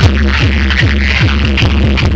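Loud electronic dance music from a large outdoor DJ sound system, with a heavy bass kick drum whose pitch drops on each beat, about three beats a second.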